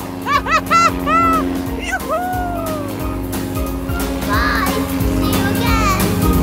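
Children's cartoon soundtrack: background music under a steady low drone, with a run of short, squeaky rising-and-falling cartoon calls, a longer falling one about two seconds in, and more short calls later on.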